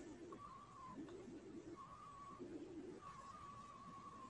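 Faint bird calls in the background over near silence: soft, short notes that repeat every second or so, a higher note alternating with lower cooing ones.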